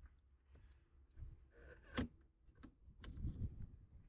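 Faint clicks and light rattling of a jump-starter clamp being worked onto a car battery terminal, with one sharper click about two seconds in.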